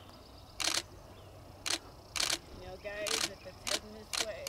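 A person's voice: short breathy gasps or exclamations every half second to a second, with a few murmured voiced sounds about three seconds in.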